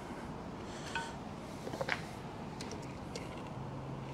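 A few light metallic clinks of a wrench on a steel clamp bolt as the bolt is snugged, about a second in and again just before two seconds, over faint steady shop room tone.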